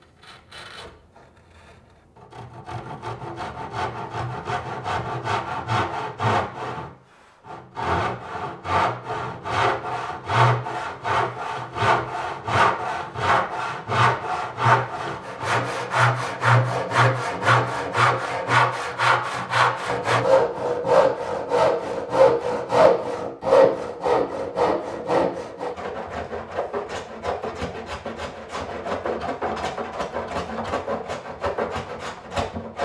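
Brass-backed hand saw cutting a wooden board in steady strokes, about two a second, with one short break early on and softer strokes near the end.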